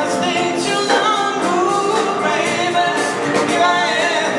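Live big band playing, saxophones, brass and rhythm section together, with a melodic line sliding in pitch over the full band sound.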